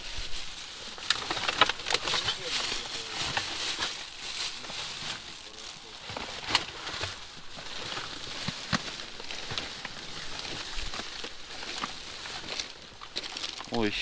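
Plastic bags and paper rustling and crinkling as gloved hands rummage through rubbish in a dumpster, with scattered sharp crackles.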